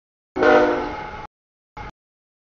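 Diesel locomotive air horn sounding at the grade crossing: a loud chord of several tones that starts suddenly about a third of a second in and fades over about a second, followed by a brief snatch of the horn near the end.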